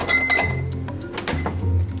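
Glass bottles clinking as a fridge door is opened and a bottle of sparkling wine is taken out, with a short glassy ring near the start, over background music with a steady bass.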